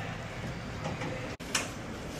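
Steady low noise inside a moving hotel lift. About a second and a half in it breaks off abruptly and turns into a similar faint hallway hum, with a brief click.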